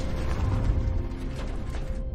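Film soundtrack: a steady held music tone over the low rumble of a rover driving across rocky ground, with a few sharp mechanical clicks.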